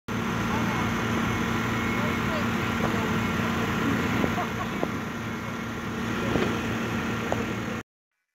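A steady machine hum over a constant hiss, with faint voices in the background, cutting off suddenly just before the end.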